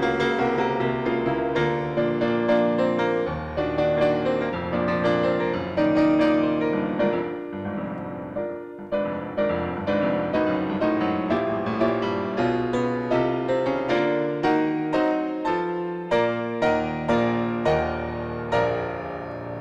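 Solo piano piece played on a Steinway grand piano: a steady flow of notes, a brief lull about eight seconds in, then distinctly struck notes or chords about twice a second, coming a little faster near the end.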